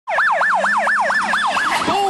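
Police car siren on yelp: a fast up-and-down wail, about four sweeps a second, that breaks into falling glides just before the end.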